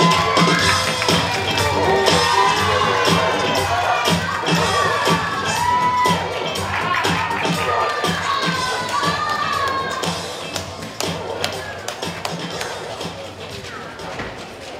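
Audience cheering and shouting, many high voices at once, over music with a steady beat. It fades out over the last few seconds.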